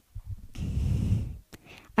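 Low rumbling rush of breath or handling noise on a handheld microphone held at the mouth, lasting about a second, followed by a short click.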